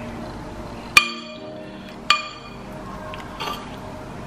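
Metal fork clinking against a ceramic pasta bowl, two sharp strikes about a second apart, each ringing briefly, then a fainter tap near the end.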